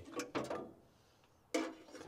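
A few short mechanical clicks and rattles as the carburetor's throttle linkage is worked by hand, with the engine not running. A brief grunt-like vocal sound comes about one and a half seconds in.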